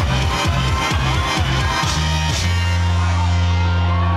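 Electronic house dance music played loud through a club sound system during a live DJ set: a choppy, pulsing bass line that gives way about two and a half seconds in to a long held bass note.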